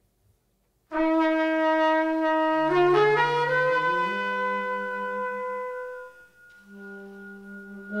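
Trumpet and saxophone playing long held notes together in free jazz improvisation, starting suddenly about a second in. The lower horn joins a couple of seconds later, both lines step upward in pitch, and the playing grows quieter near the end.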